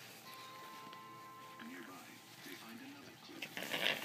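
Faint background voices and music, with a thin steady tone in the first half. Near the end comes a short burst of rustling, the loudest sound, as the parrot moves in the cloth toy.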